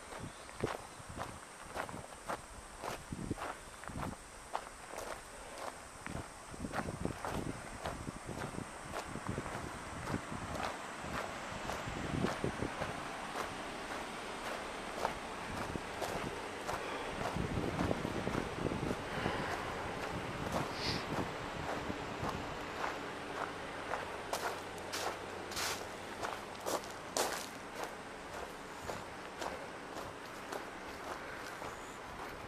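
Footsteps walking over gravel ballast and grass between old rusted rails, at a steady pace of about two steps a second. A faint steady low hum comes in during the second half.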